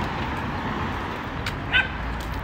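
Steady outdoor street noise while walking, with one short, high-pitched yelp near the end.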